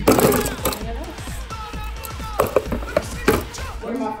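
Background music and voices, with scattered knocks and clatter of hard plastic cups of frozen ice jostling in a plastic tray as they are handled.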